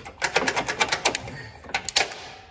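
Quick metallic clicking and rattling of needle-nose pliers working a steel spring clip off the pin of a mower deck hanger arm. The clicks come thick for the first second, then a few more near the end.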